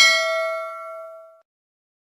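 Bright bell-like ding sound effect of a subscribe-button animation's notification bell, struck once and ringing out, fading away about a second and a half in.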